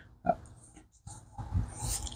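A man breathing audibly in a pause in his talk: a brief mouth sound, then a noisy breath in that grows louder toward the end.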